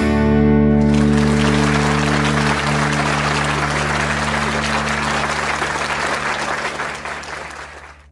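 Final chord of a country song on electric bass and electric guitar left ringing, with applause starting about a second in; both fade away to silence near the end.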